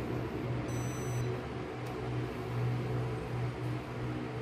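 Sharp J-Tech Inverter split aircon indoor unit with a steady low hum and airflow hiss as it shuts down on the app's command. A short high beep comes about a second in, and a faint click just before two seconds.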